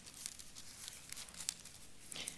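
Faint rustling of thin Bible pages being turned, with a small click about one and a half seconds in.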